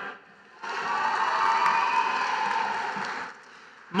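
Audience applause with some cheering for a graduate whose name has just been called. It swells about half a second in and fades away after about three seconds.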